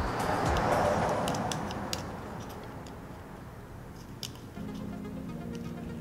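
Faint clicks and scraping of plastic as a wire hook tool works a push-to-start button out of the four tabs holding it in its bezel, over soft background music.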